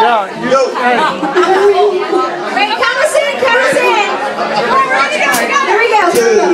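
Several voices at once, loud and overlapping, talking and calling out over one another in a room.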